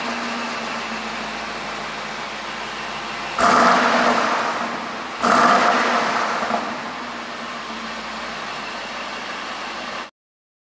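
BMW X7 engine running at idle, with two sharp blips of the throttle about three and a half and five seconds in, each dying back to idle over a second or two.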